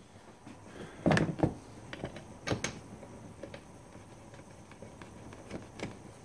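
Tube spanner and metal parts of a quad's gear selector linkage clicking and knocking as they are handled: a cluster of sharp knocks about a second in, two more around two and a half seconds, and one near the end.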